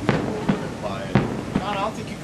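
Fireworks display going off: three sharp bangs about half a second apart.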